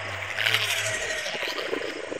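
The cartoon Liopleurodon's call: a low, steady, didgeridoo-like drone that stops about a second in, followed by a rougher low rumble.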